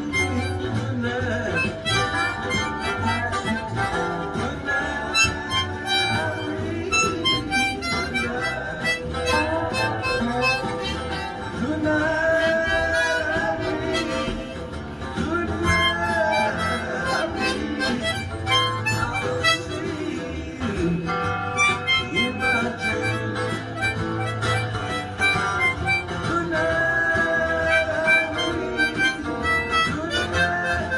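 Harmonica played continuously with both hands cupped around it: a running series of held notes and chords, several of them bent up and down in pitch.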